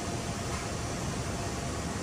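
Steady fan and ventilation noise, an even rushing hiss with a faint steady tone under it.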